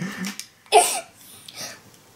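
A child's short laugh about three-quarters of a second in, among brief quiet vocal sounds.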